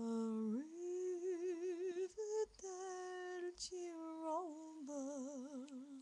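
A woman singing unaccompanied, holding a series of long notes with a wide vibrato and short breaths between phrases.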